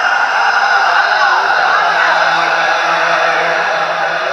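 A male naat reciter singing a devotional line into a microphone, his voice carried over a PA system. A low steady note is held underneath from about a second and a half in.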